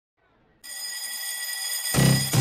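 A steady, high-pitched electric ringing, like a bell, starting about half a second in as the opening of the song's track; a music beat with heavy bass comes in right at the end.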